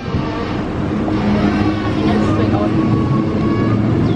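Road traffic: motor vehicles running on a multi-lane highway, a steady wash of engine and tyre noise with a held engine note through most of it.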